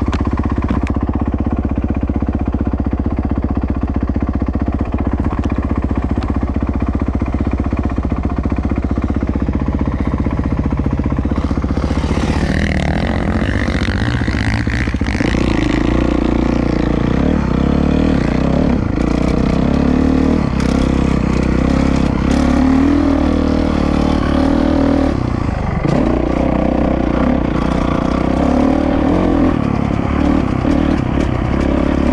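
Motocross dirt bike engine running steadily at first, then from about halfway revving harder and changing pitch as the bike accelerates along a dirt track. Frequent short knocks from the bike crossing rough ground run through the second half.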